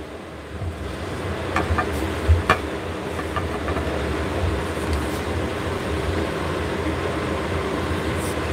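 A steady low rumble with a hiss over it. A few light clicks and knocks come in the first few seconds as an insulated metal water bottle is picked up and handled.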